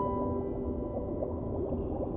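Soft piano music with held notes slowly fading, between phrases.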